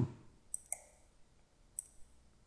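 Faint computer mouse clicks: two quick clicks about half a second in and another near the end, selecting a menu item in software.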